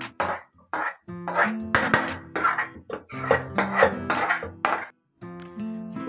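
Metal spoon scraping thick masala gravy out of a metal kadai into a pressure cooker: a run of quick scrapes and clinks, about two or three a second.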